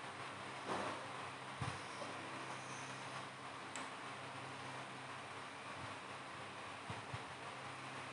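Quiet room tone: a steady low hum under faint hiss, with a few soft knocks.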